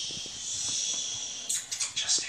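A person making a long, drawn-out "shhh" shushing sound that fades out about a second and a half in, with a few light knocks and rustles from the toddler moving in the crib.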